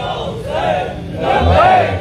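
Large crowd of men shouting out together in response to the preacher's words, swelling louder about a second and a half in.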